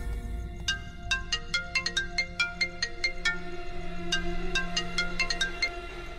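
Mobile phone ringtone: a melody of quick marimba-like notes, about four a second, stopping just before the end.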